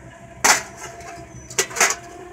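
A sharp knock about half a second in, then two short rattling scrapes near the end, from an interior trim panel being handled against the car's body.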